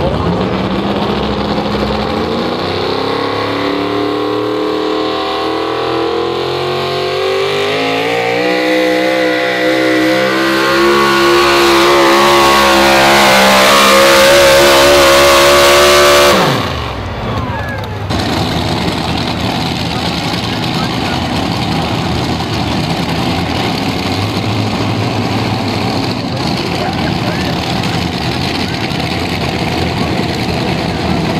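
Modified 4x4 pulling truck's engine under full load, its pitch and loudness climbing steadily for about sixteen seconds as it drags the sled down the track. Then it shuts down sharply and the revs fall away, and a steadier, lower engine rumble follows.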